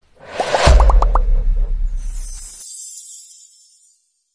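Animated outro sound effects: a whoosh with a deep bass hit, then a quick run of short rising pops, then a high shimmering tail that fades away.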